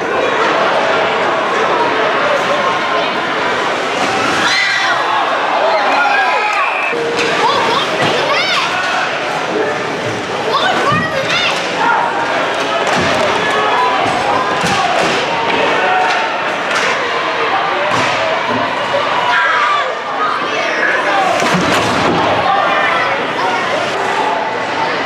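Ice hockey play heard from beside the rink: indistinct voices and shouts over a busy arena, with sharp bangs of pucks, sticks and bodies against the boards and glass at irregular moments.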